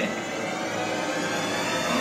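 A steady rushing, whirring noise.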